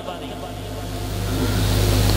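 A steady low hum that grows gradually louder, over a faint hiss.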